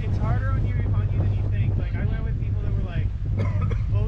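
Outboard motor of an inflatable boat running steadily, a constant low hum, with people's voices over it.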